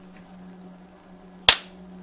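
A film clapperboard's clapstick snapping shut once: a single sharp clack near the end, over a steady low hum.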